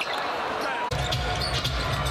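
Basketball arena game sound: crowd noise with a basketball bouncing on the hardwood court. The crowd sound jumps abruptly and grows fuller about a second in.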